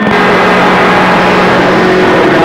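CB radio receiving a keyed-up carrier with no voice on it: a steady hiss of static with an even, low hum running through it.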